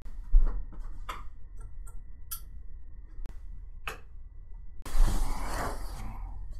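Handling and movement noises in a small room: a sharp low thump about half a second in, scattered small clicks, and a longer rustle about five seconds in as a person settles back into a seat.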